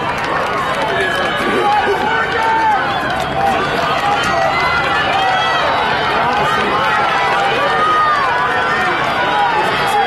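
Track-meet spectators yelling and cheering runners on during a race, many voices overlapping into a steady crowd din with shouts rising and falling throughout.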